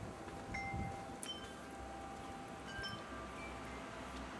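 Wind chime ringing faintly, with a few clear metallic tones struck at scattered moments, each ringing on briefly, over a low steady background hiss.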